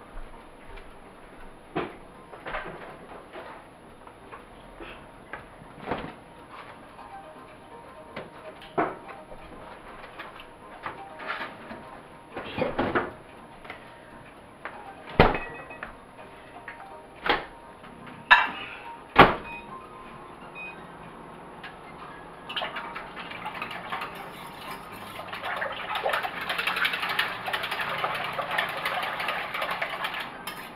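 Scattered kitchen knocks and clatter, a few of them sharp, as things are handled on a counter. About two-thirds of the way in, a steady swishing and scraping of a utensil stirring in an enamel pot starts and grows louder toward the end.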